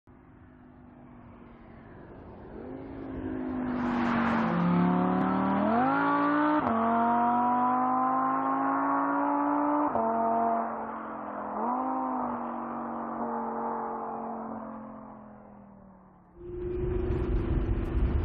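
Audi R8 V10 Spyder's naturally aspirated V10 accelerating hard, its pitch climbing through the gears with sudden drops at upshifts, then fading as the car pulls away. Near the end the sound cuts abruptly to a steady engine note under a loud rushing noise.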